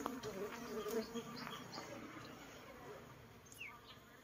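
Swarm of honeybees hanging in a cluster on a tree branch, buzzing with a wavering hum that is strongest in the first couple of seconds and thins out toward the end.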